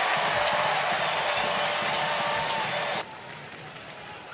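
Ballpark crowd cheering and applauding a game-ending double play. About three seconds in it cuts off abruptly to much quieter stadium crowd noise.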